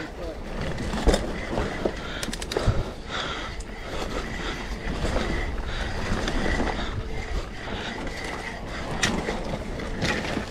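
Mountain bike descending a steep, loose dirt trail: tyres rolling and sliding over dirt and roots, with the chain and frame rattling and occasional sharp knocks over bumps, and wind rushing over the microphone.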